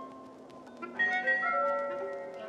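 Sparse, pointillistic computer-generated music in the style of 1950s serial avant-garde works: scattered short pitched notes and clicks over a low held tone. About a second in, a louder cluster of several held notes enters.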